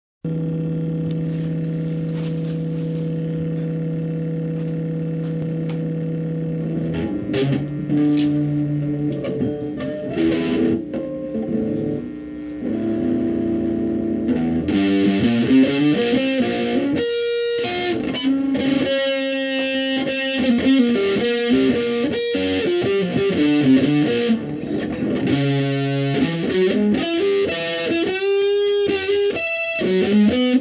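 Electric guitar played through an amplifier, improvising alone: one long held note for about seven seconds, then a wandering melodic line that gets busier about halfway, with bent notes near the end.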